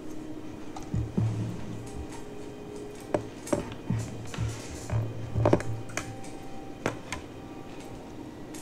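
Handling noise from an oscilloscope probe being connected: plastic clicks from the probe, its clips and the BNC connector, and dull bumps against the oscilloscope case and the desk, scattered irregularly.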